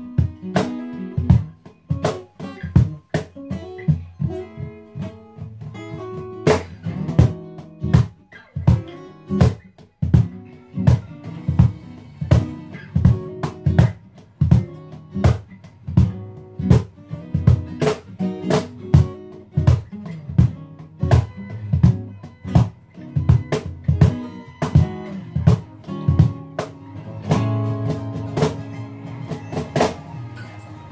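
A cajon played in a steady groove together with an acoustic guitar playing chords: an informal two-person jam.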